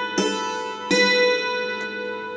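Hammered dulcimer: two notes struck with hammers on its steel strings, about three-quarters of a second apart, each left ringing with a shimmer of overtones.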